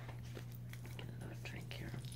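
Soft, scattered small clicks and rustles from a deck of cards being handled, over a steady low hum.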